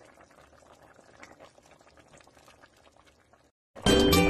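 Tomato-based stew boiling in a pot, a faint steady crackle of bubbles. It cuts out about three and a half seconds in, and loud music comes in just before the end.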